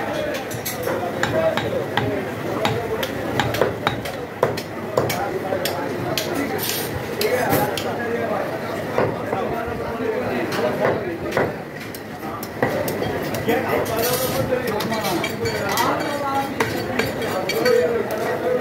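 Heavy meat cleaver chopping and cutting goat meat on a wooden chopping block: irregular sharp knocks, with voices talking in the background.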